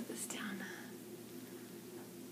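A brief, soft bit of a woman's voice in the first second, much fainter than her normal talk, then quiet room tone with a low steady hum.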